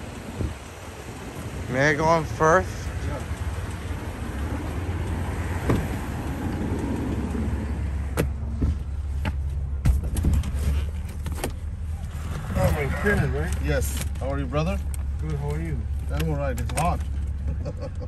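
Getting into a Toyota minivan: street noise, then a few sharp knocks of the door being shut about eight to ten seconds in. After that comes the steady low hum of the running vehicle heard from inside the cabin, with some talking.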